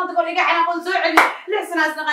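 A woman's high-pitched voice held in long, drawn-out, wavering notes, like a wailing lament. A single sharp hand clap or slap cuts in a little over a second in.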